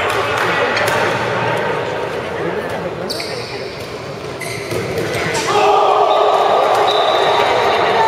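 Indoor handball game in a reverberant sports hall: the ball thuds on the court floor amid echoing shouts from players and spectators. About five and a half seconds in, the shouting gets louder and is held.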